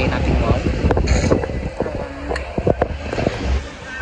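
Wind buffeting a phone's microphone as a heavy low rumble, under a woman's voice.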